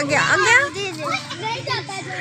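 Children's voices talking and calling out.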